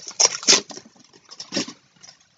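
A foil booster-pack wrapper and trading cards rustling and crinkling in the hands, a few short crinkles, the loudest about half a second in.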